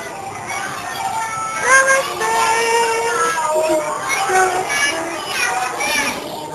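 A group of young children singing a song together, with held notes rising and falling in a simple tune.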